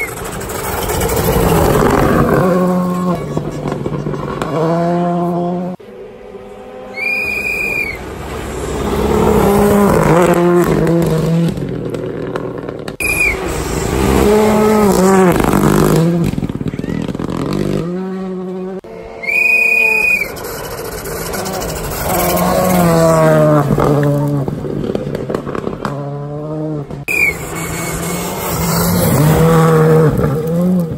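Rally cars passing one after another on a gravel stage. Each engine is revved hard, its pitch climbing and dropping through gear changes as it accelerates past, then fading away.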